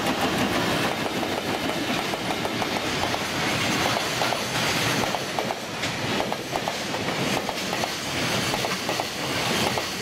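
A JR Freight container train's flatcars rolling past close by, the wheels clattering over the rail joints in repeated clicks over a steady rumble.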